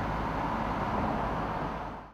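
Steady engine and road noise heard inside the cabin of the Geiger supercharged Corvette C6 V8 while cruising, fading out near the end.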